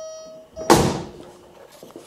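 A steady high tone that stops about half a second in, then one loud thud that fades quickly.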